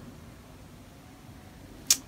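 Quiet room tone with one brief hiss-like burst just before the end.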